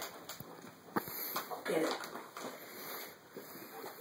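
Indistinct, low voices with a few sharp clicks or knocks.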